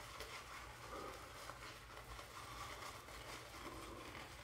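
Faint swishing of a wet shaving brush working shaving-cream lather over a stubbled chin and neck.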